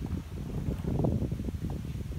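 Wind rumbling on the microphone, with irregular sucking and slurping from a goat kid drinking with its muzzle in a water tub, busiest in the middle.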